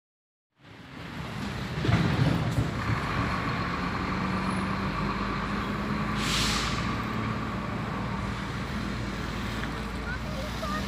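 A motor vehicle's engine running steadily, with a short hiss about six seconds in.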